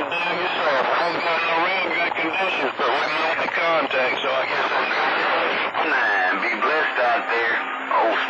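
CB radio receiving distant stations over skip on channel 28: voices talking through the receiver with a thin, narrow radio sound.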